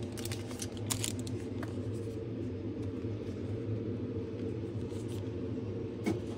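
A steady low hum fills the room, with a few faint soft clicks about a second in from a plastic card sleeve being handled and worked open.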